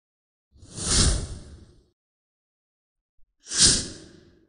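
Two whoosh sound effects, each swelling up and fading away over about a second: the first about half a second in, the second near the end.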